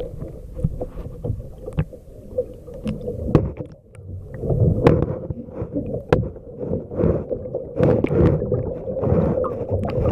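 Underwater sound from a camera held below the surface: muffled low rumbling and swishing of water, with scattered sharp clicks and a faint steady hum, getting louder about halfway through.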